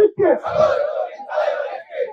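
A crowd of protesters shouting a slogan back in unison, in two loud chanted phrases.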